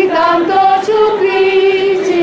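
Singing voices in a slow melody of long held notes that step up and down, loud and clear.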